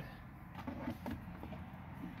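Plastic lower steering-column shroud being handled and worked into place: faint rubbing and a few light clicks of plastic trim.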